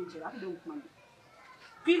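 Only speech: a person talking, a pause of about a second, then talking again near the end.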